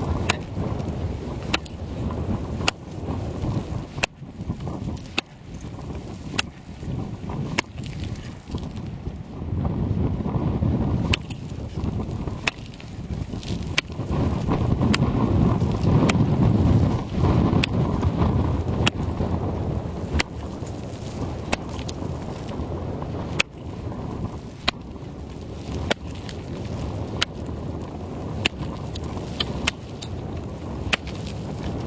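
An axe chopping into lake ice with repeated strikes, about one every second, cutting a hole through the ice to test how thick it is. Wind buffets the microphone, heaviest in the middle.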